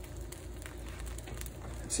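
Beaten eggs sizzling faintly on the hot plate of an electric contact grill, a soft steady crackle over a low hum.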